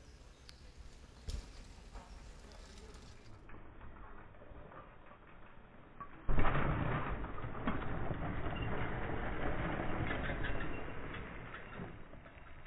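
Mountain bike coming down a dirt trail close by: after a quiet stretch, a sudden thump about six seconds in, then the tyres running over loose soil and dry leaves for about five seconds, fading out.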